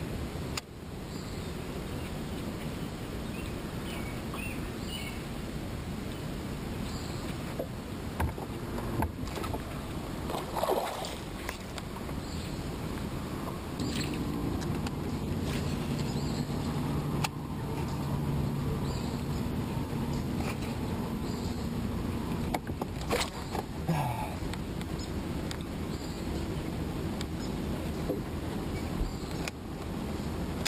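Steady low noise of a small fishing boat on calm water, with a low motor hum of steady pitch from about halfway through until about three-quarters in, and scattered light clicks and knocks from the fishing tackle and boat deck.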